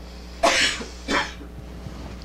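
A man coughing twice into a close microphone: a harder cough about half a second in and a shorter one about a second in.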